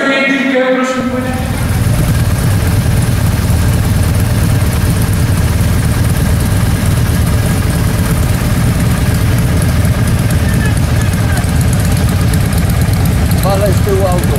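Engines of a group of touring motorcycles running at low speed: a steady low rumble that starts abruptly about a second in.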